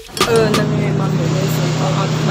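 Background music stops abruptly. A steady low mechanical hum sets in with a noisy backdrop of voices around it.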